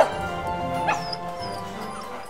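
Orchestral-style background music with held notes, over which a dog barks once sharply at the start and gives a short rising yip about a second in.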